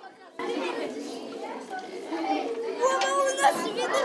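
A group of children chattering and talking over one another in a room, a few voices standing out more clearly near the end.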